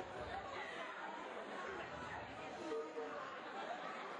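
Many people chattering at once, a steady, indistinct babble of voices with no single speaker standing out.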